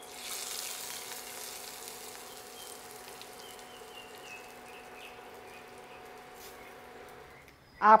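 Hot ghee tempering with cumin seeds and dried red chillies poured into a yogurt-based fenugreek curry, sizzling sharply at first and dying down over the next few seconds. A steady low hum runs underneath.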